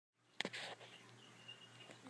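A single sharp click shortly after the start, followed by a brief rustle, then faint room noise with a low steady hum.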